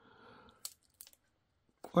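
Faint crinkling of a plastic-film-wrapped package being handled, with a sharp click just after half a second and two small ticks about a second in.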